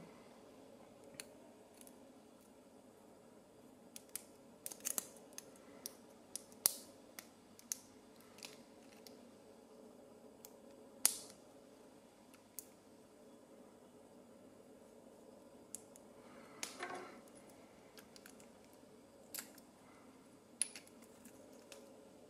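Sporadic small metallic clicks, ticks and a short scrape from hand tools working at the retaining clips of a lock cylinder while it is being dismantled. The few louder clicks are sharp and isolated.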